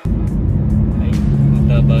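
Car cabin noise at highway speed: a loud, steady road-and-engine rumble that cuts in suddenly, with a steady low hum joining about a second in.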